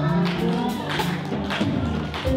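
Live gospel praise and worship music: a man sings into a handheld microphone over a band, with a few sharp drum or percussion hits.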